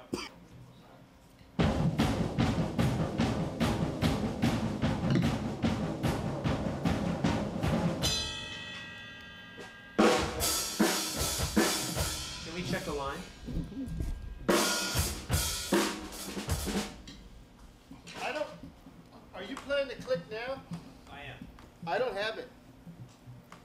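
A drum kit played live: a long run of fast, even strokes with cymbals, a ringing decay, then two more loud bursts before it drops away, with voices faintly near the end.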